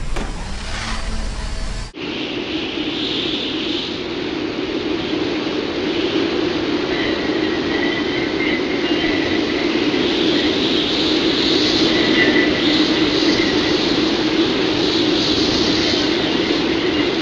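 Steady rushing, engine-like roar of the rocket-boosted sleigh, a sound effect, starting with a sudden cut about two seconds in and growing slightly louder.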